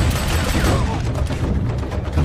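Rapid gunfire and booms from a war-film battle scene, mixed over a music score, with a falling glide about half a second in.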